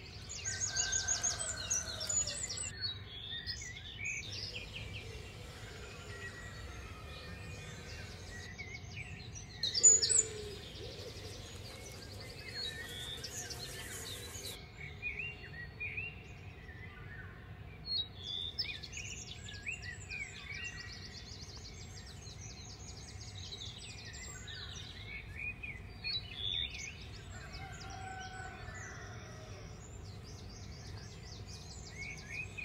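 Outdoor birdsong: several birds chirping and trilling on and off over a steady low background noise, with one brief loud burst about ten seconds in.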